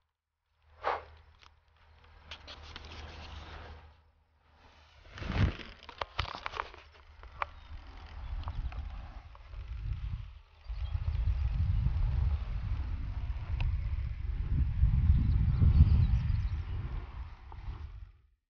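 Low rumble and rustle of wind and handling on the microphone outdoors, with a few sharp knocks; the rumble gets heavier about ten seconds in.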